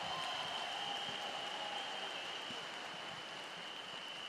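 Large audience applauding in a big hall, the clapping slowly dying down, with a faint steady high tone over it.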